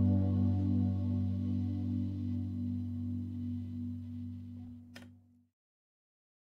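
Layered electric guitar tracks from a Mark James Heritage DK350, drenched in reverb, ringing out on a sustained low chord that slowly fades away. A faint click comes about five seconds in, and the sound stops just after.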